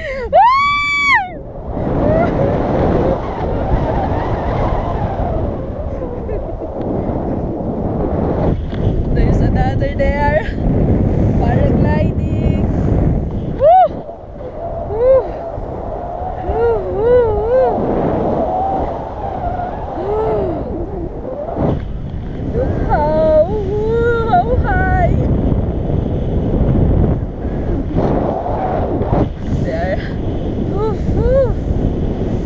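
Steady rush of wind buffeting the action camera's microphone as the tandem paraglider flies, with a woman's high squeal about a second in and bits of voices and exclamations in the middle.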